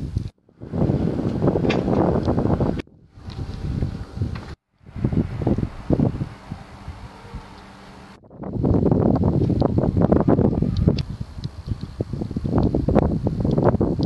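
Wind buffeting a camera microphone outdoors: a loud, rough rumble in several stretches, broken off abruptly by short silences.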